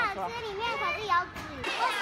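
Young children speaking in high-pitched voices.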